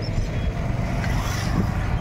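Roadside traffic noise: a steady, fairly loud rumble of passing motor vehicles, with no single clear event.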